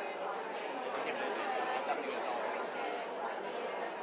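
An audience of many people talking at once in pairs, a steady babble of overlapping voices filling the room.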